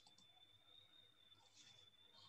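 Near silence with a faint steady high whine and a few faint clicks, from a computer mouse clicking to advance a presentation slide.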